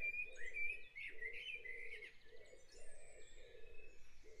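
Dawn chorus field recording used as a background track: birds singing, with one bird repeating short chirping notes about twice a second.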